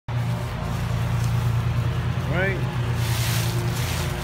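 A steady low motor hum, with one short voice-like call that rises and falls in pitch about halfway through.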